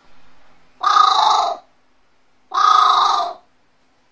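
A pet carrion crow gives two loud, harsh caws, each under a second long, after a quieter sound at the start. Its owner reads them as the crow complaining about the heat.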